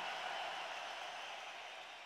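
Faint, even hiss-like background noise with no tone in it, steadily fading out toward silence.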